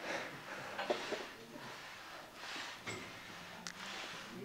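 A man's heavy breathing under exertion, several breaths in and out, during dumbbell pullover reps, with a few faint clicks.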